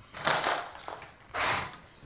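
Two short rustling, scraping noises of objects being handled and moved, the second about a second and a half in.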